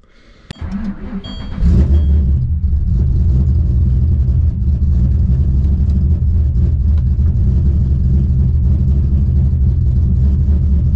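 Ford Falcon GT's V8 engine being started: a click, about a second of cranking, then it catches and settles into a steady idle, heard from inside the cabin.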